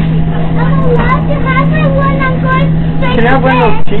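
A young child's high-pitched voice, not clear words, rising and falling over a steady low hum and background rumble, loudest near the end.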